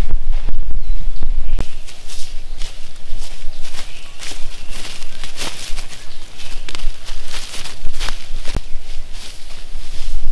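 Footsteps and rustling through long grass, a string of short crisp swishes, with wind rumbling on the microphone for the first second or two.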